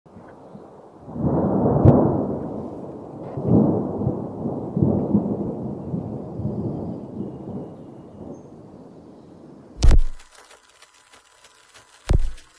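Intro sound effect: a low thunder-like rumble that swells and fades several times, with a sharp click early in the rumble. Near the end comes a single loud, sharp hit.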